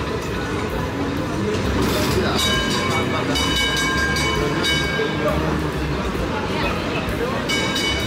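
Red heritage street tram passing close by on its rails, its warning bell rung several times in the middle of the stretch and once more near the end, each ring held for a moment. Crowd chatter runs underneath.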